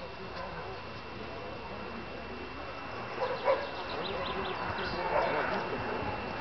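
Indistinct chatter of spectators at an outdoor dog trial, with a dog barking briefly partway through.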